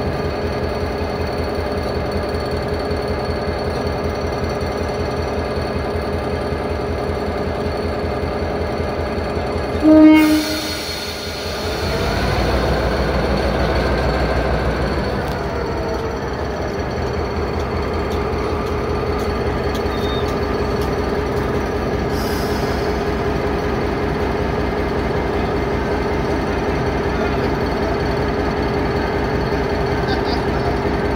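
EMD G22CW-2 diesel-electric locomotive's two-stroke diesel engine idling with a steady throb, then a short blast of its horn about ten seconds in. The engine then throttles up and runs louder for a few seconds as the train pulls away, settling to a steady run while the locomotive rolls past.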